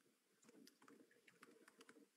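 Faint computer keyboard typing: irregular, quick key clicks, several a second.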